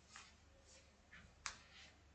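Near-silent room tone with a handful of faint, short clicks from computer keyboard and mouse use; the sharpest comes about one and a half seconds in.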